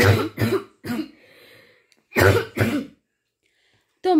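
A person coughing in two short fits: a few coughs right at the start and two more a little after two seconds.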